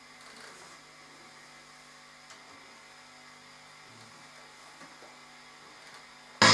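Faint, steady electrical mains hum from an idle electric guitar rig, with a faint click or two.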